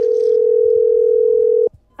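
Telephone ringback tone heard down the phone line: one steady ring lasting about two seconds that cuts off suddenly, as a call is placed to her again.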